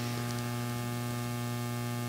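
Steady electrical mains hum, a constant buzz with many overtones, in a pause between spoken words.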